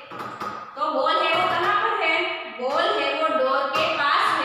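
A woman speaking steadily, a teacher talking to her class.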